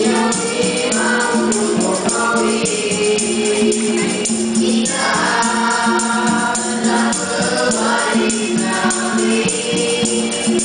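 Nasyid group of boys singing in vocal harmony, with a steady beat of hand drums and jingling percussion.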